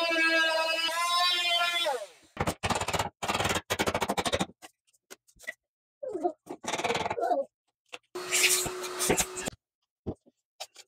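Oscillating multi-tool cutting through wooden door trim and drywall with a steady high buzz, its pitch dropping as it winds down about two seconds in. This is followed by bursts of knocking and scraping as the cut-out trim is chipped away with a hammer and chisel, with another short noisy run near the end.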